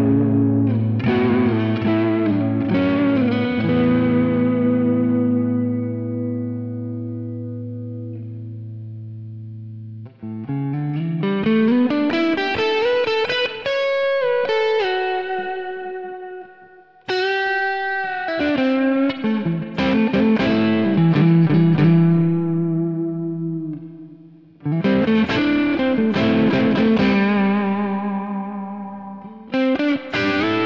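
PRS DGT SE electric guitar played on its neck pickup through a Kemper amp profile with effects: a ringing chord fades away over several seconds, then melodic phrases with a rising run follow, broken off briefly twice.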